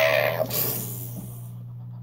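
A young man's loud, sustained shout that ends about half a second in, trailing off into a fading hiss, over a steady low electrical hum.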